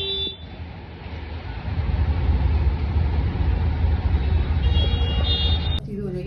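Road traffic: a steady low rumble of vehicles that grows louder about two seconds in. Short high-pitched horn toots sound at the start and again shortly before the end.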